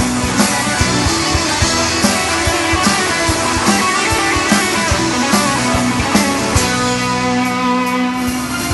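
Rock band playing an instrumental passage: electric guitar over keyboards and a steady drum beat.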